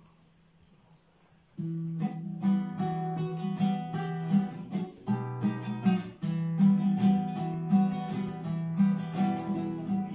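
Near silence for about a second and a half, then an acoustic guitar starts playing the introduction to a waltz: chords in a steady rhythm, with no voice yet.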